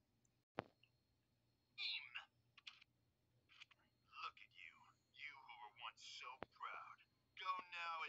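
A single sharp click, then a faint, tinny voice from a cartoon clip playing through a phone's small speaker.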